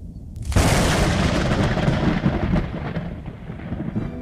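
A thunder-like crash: a sudden loud crack about half a second in that rolls and slowly fades over the next three seconds above a low rumble.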